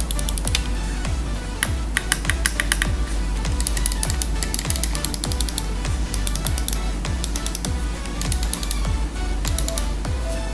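Crisp button clicks of an AJAZZ AJ380 gaming mouse, pressed in quick runs of several clicks each. Background music with a steady beat plays under them.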